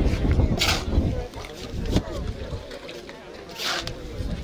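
Shovel scraping through wet cement mix on the ground: two short scrapes about three seconds apart, with a low rumble in the first second.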